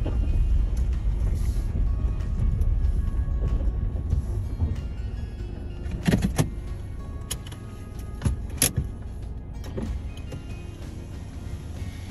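Low rumble of a car, dying down over the first several seconds as it comes to rest, then several sharp clicks and knocks in the second half.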